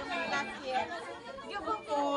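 Several women talking over one another, with indistinct chatter and voices through a microphone.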